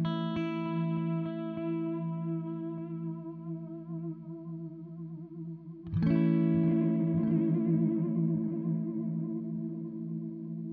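Electric guitar chords from a Fender Telecaster on stock pickups, played through a Source Audio Collider pedal set to tape delay. A ringing chord fades with a slight wobble in pitch, and a new chord is strummed about six seconds in and rings out the same way.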